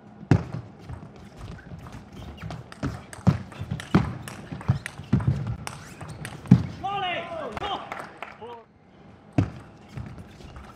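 Table tennis rally: the ball clicks off the bats and table again and again for about six and a half seconds. After the rally ends, a player lets out a shout of about a second and a half with a wavering pitch. A single click of the ball comes near the end.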